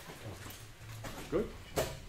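Room tone with a steady low hum, one short spoken word about a second in, and a brief knock near the end.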